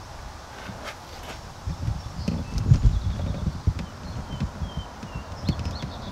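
A run of irregular low thumps and rumble on the microphone, starting about two seconds in and easing off near the end, like handling knocks or bumps against the plastic hull as the camera is moved.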